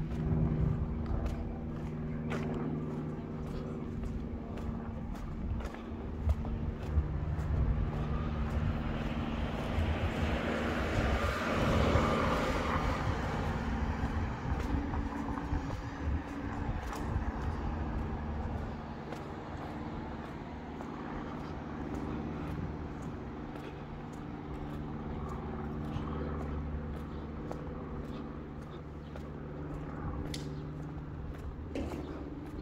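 Steady engine hum of a motor vehicle, with a louder vehicle passing by roughly ten to fourteen seconds in. Faint scattered clicks run through it.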